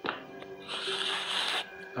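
Limping footsteps sound effect: a thud, then a long scraping drag of about a second, ending on a louder thud, over a steady music drone.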